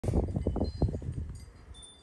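Low rumbling noise of a phone's microphone being handled as the camera moves, loudest in the first second and dying away, with a few brief faint high ringing tones.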